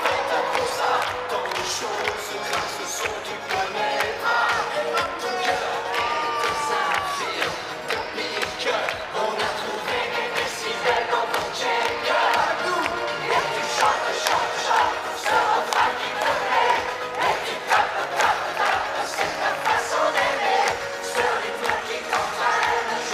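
A large concert crowd cheering and shouting over live 1980s French pop music, the whole mix loud and dense.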